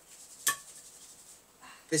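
A single light clink about half a second in, a small hard object striking with a brief ring, against quiet room tone.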